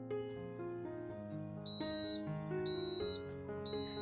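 Mito R7 rice cooker beeping three times, about once a second, each beep a short high tone: its signal that the cooking programme has finished. Background music plays underneath.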